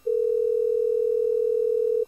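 US telephone ringback tone heard over a Gmail phone call: one steady two-second ring, the sign that the dialled number is ringing and has not been answered yet.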